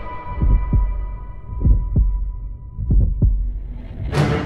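Heartbeat sound effect: three slow double thumps, lub-dub, about a second and a quarter apart. A high ringing tone left over from the music fades out under them.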